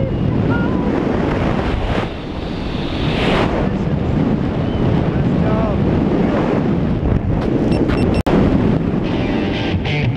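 Wind rushing and buffeting over a wrist-mounted action camera's microphone during a tandem parachute descent under open canopy, loud and steady, with a momentary dropout late on.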